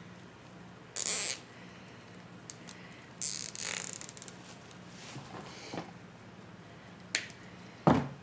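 Plastic deco mesh rustling and scraping in short bursts as hands work it on a wire wreath frame, the loudest about a second in and a longer one about three seconds in, with a sharp click near the end.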